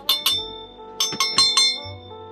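A metal measuring cup clinking against kitchenware in two quick clusters of sharp clinks, each with a brief metallic ring, over background music.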